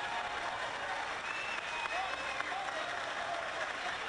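A chamber full of legislators applauding steadily, with voices calling out over the clapping.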